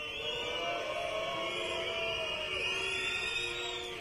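Protest crowd whistling and booing: many overlapping whistles and voices, held steadily and easing off slightly near the end.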